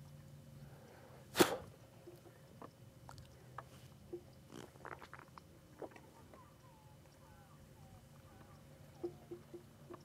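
Quiet open-air sound on a fishing boat: a steady low hum, one sharp knock about a second and a half in, a few small clicks, and faint chirping in the second half.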